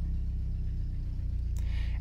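A vehicle engine running outside, a steady low rumble heard from inside the trailer.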